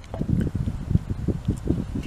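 Irregular low thumps and rumble of microphone noise.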